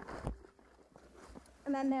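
Music cutting off at the start, then the faint, irregular hoof steps of a walking pony, with a short spoken word near the end.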